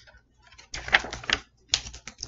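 A page of a hardcover picture book being turned: a crisp paper rustle with a few sharp flicks about a second in, and a short second rustle near the end.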